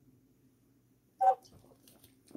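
Near silence, then about a second in one short, loud vocal sound from a person.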